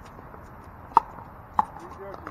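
Pickleball paddles striking a plastic pickleball during a rally: two sharp pops about two-thirds of a second apart, the first about a second in.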